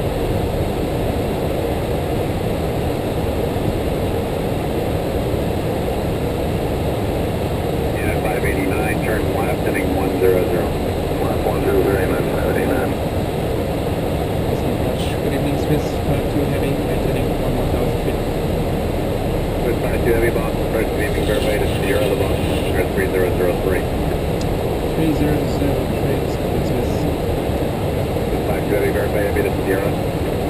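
Steady cockpit noise of an Airbus A330-300 in flight, a constant low rushing of airflow and engines, with indistinct voices over it several times.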